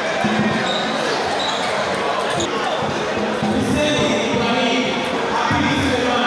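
Table tennis rally: the ball clicking off the bats and the table in quick succession, over a steady hum of chatter in the hall.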